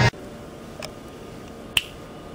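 Two short, sharp clicks about a second apart, the second one louder, over quiet room tone in a small room.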